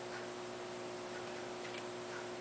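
Faint light ticks, roughly one a second but unevenly spaced, over a steady electrical hum and hiss.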